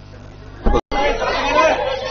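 Speech over crowd chatter, starting just under a second in after a short loud pop and a split-second gap of silence where the footage is cut together.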